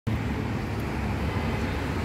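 Steady low rumble of vehicle traffic in a street.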